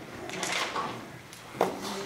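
Handling noise in a meeting room: a brief rustle, then a single sharp knock about one and a half seconds in.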